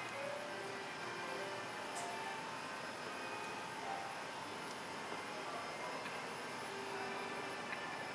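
Faint music with short held notes over a steady background hiss of ambient noise.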